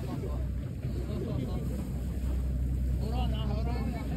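Boat engine running with a steady low rumble, mixed with wind and water noise. A person's voice is heard faintly near the end.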